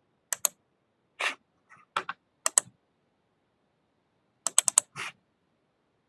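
Sharp clicks and taps on a computer keyboard and mouse, in ones and pairs, then a quick run of four about four and a half seconds in.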